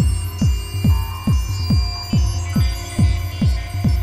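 Techno played on modular synthesizers and drum machines: a steady four-on-the-floor kick drum, each hit dropping in pitch, about two and a third beats a second, over a sustained low bass and held synth tones.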